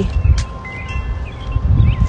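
Wind rumbling and buffeting on the phone's microphone, with a few faint, thin ringing tones in the middle and a single click about half a second in.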